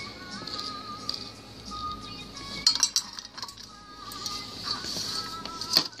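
A plastic spatula clinking and scraping against a metal muffin tin and a bowl as crumb crust is spooned into the cups: a few sharp clinks, the loudest about halfway through and near the end. Faint music with a wavering melody plays underneath.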